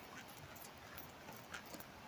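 Manduca sexta (tobacco hornworm) caterpillar chewing a tobacco leaf, recorded with a microphone held against the leaf: faint, irregular clicks over a steady hiss.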